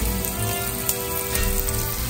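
Butterflied all-beef hot dogs frying in butter in a nonstick pan, a steady sizzle, under background music with long held notes.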